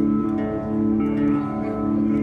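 Acoustic-electric guitar being played, plucked notes over steady, sustained tones.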